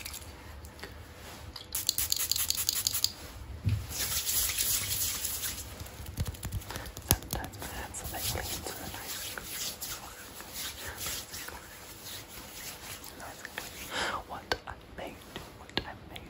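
Close-miked, inaudible whispering mixed with hands rubbing together as they are sanitized, in louder rubbing bursts about two seconds in and again around four to five seconds in.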